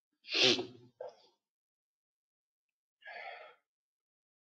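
A person sneezing once, loudly, a quarter second in, with a short breath just after. A brief, soft vocal sound follows about three seconds in.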